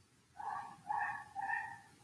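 An animal giving three short, high whines in quick succession, each about half a second long, over a quiet room.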